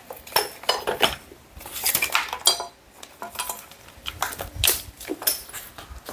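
Power tools clattering and clinking as they are shifted and lifted from a pile on the floor: an irregular run of hard knocks and metal clinks, one ringing briefly about two and a half seconds in.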